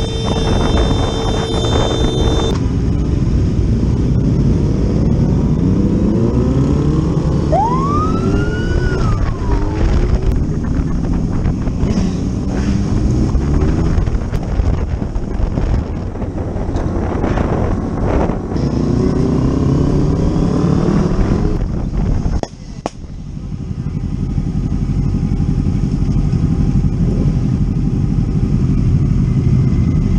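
Sport motorcycle engine heard from the rider's own bike, its revs rising and falling again and again through the gears over wind and road noise. A single whistle-like tone rises and falls once about eight seconds in. After a sudden break about three-quarters of the way through, the engine runs more steadily.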